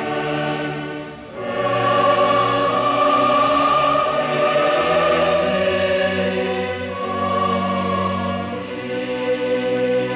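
Background choral music: a choir singing slow, long-held chords, moving to a new chord about a second in and again around seven seconds.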